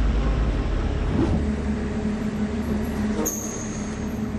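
A transport van's engine running as the van drives off, heard as a strong, steady low sound with a hum above it. About three seconds in the sound changes abruptly and a high, thin whine sets in.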